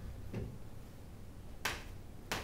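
Chalk tapping against a chalkboard while writing: two short sharp clicks, a lighter one about a third of a second in and a louder one near the end, over a faint low room hum.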